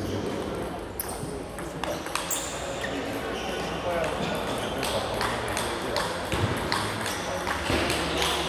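Table tennis balls clicking off paddles and tables in a large, echoing sports hall, with many scattered clicks from this and nearby tables, over a murmur of background voices.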